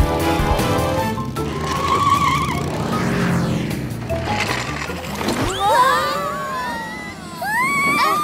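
Cartoon chase soundtrack: background music with motor-vehicle sound effects, then several sliding, whistling tones that rise and fall over the last couple of seconds.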